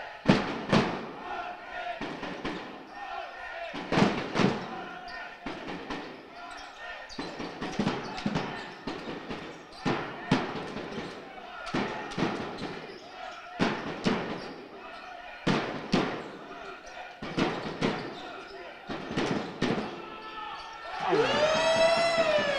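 A basketball bouncing on a hardwood sports-hall floor, making repeated sharp bounces with echo from the large hall. About a second before the end, a siren-like wail starts, rising and falling in pitch.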